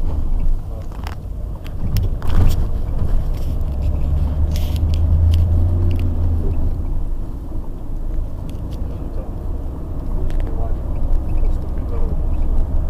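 Car engine and road noise inside a moving car's cabin, with a low engine drone that grows louder for a few seconds as the car pulls away, then settles back. A few sharp knocks or clicks come through, one about two seconds in.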